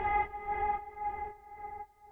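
Closing synth chord of an electronic dance track, a sustained pitched tone with a low rumble beneath, fading out and dropping away almost to silence near the end.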